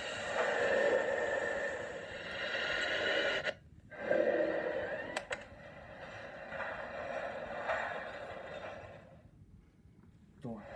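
DVD menu soundtrack heard through a TV's speakers: a steady noisy background that drops out briefly about three and a half seconds in and fades low near the end, with a single click about five seconds in.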